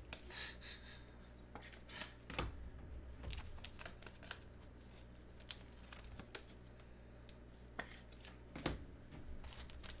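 Faint scattered clicks and rustles of trading cards and packaging being handled, over a low room hum. A foil card pack starts to crinkle near the end.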